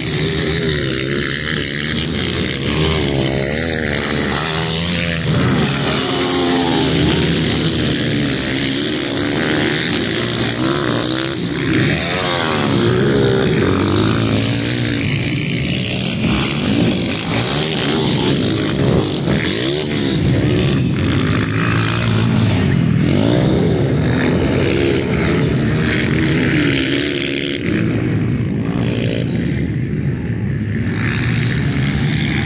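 Several 230cc dirt bikes racing on a dirt track. Their engines rev up and down as the riders work the throttle through the course, and the overlapping pitches keep rising and falling.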